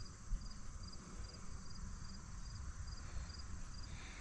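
Insects chirping faintly outdoors, a short high chirp repeating about twice a second over faint low background noise.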